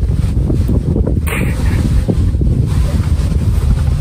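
Wind buffeting the phone's microphone: a loud, steady low rumble with no let-up.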